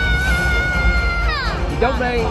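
Show soundtrack over the loudspeakers: one long, high, pitched note held steady for over a second, then sliding down and ending about one and a half seconds in, over background music.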